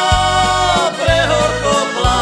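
Instrumental break in an East Slovak folk song: an accordion melody over sequenced bass on a steady beat.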